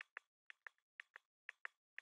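Faint computer mouse clicks, a quick pair about twice a second in an even rhythm, while objects are selected and made solid in 3D mesh software.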